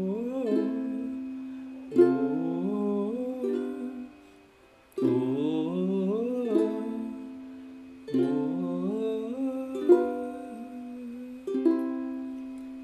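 Ukulele playing the slow C, Am, F, G7 chord sequence, one sharp strum about every two to three seconds, each chord left to ring and fade.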